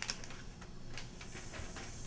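A few faint, light clicks and handling noises over a low steady hiss.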